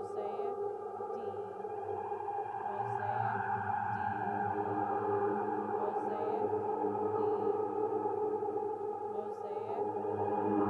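Hologram Microcosm effects pedal in its Mosaic D mode, playing back micro-loops of a spoken voice layered at half, normal, double and quad speed. The result is a steady, dense, pitch-shifted drone of smeared voice fragments.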